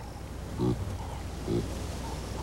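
Baboon giving two short, low grunts, about a second apart, over a steady low background rumble.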